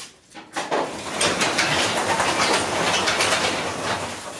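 Sectional garage door being raised: a couple of clicks, then a steady rattling rumble of its rollers running up the metal tracks for about three seconds, easing off near the end.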